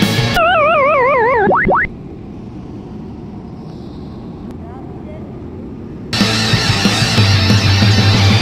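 Rock music breaks off for a cartoon-style 'fail' sound effect: a wobbling tone sliding downward for about a second and a half. A few seconds of quieter, featureless noise follow before the rock music starts again near the end.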